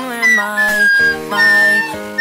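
A recorder playing the tune in clear, high notes: a short note, a slightly lower one, then a longer held note, over a pop song's backing track and sung vocals.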